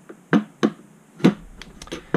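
Machined aluminium turbo-pump parts being handled and set down on a metal bench: three sharp clicks and knocks, the third about a second in, followed by fainter ticks.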